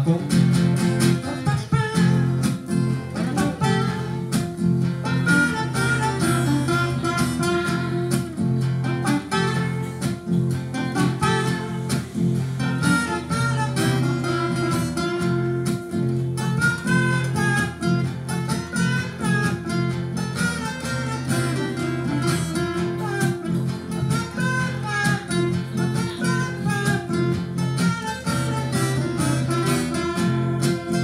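Two acoustic guitars playing a song together, with a man's voice singing over them through much of it.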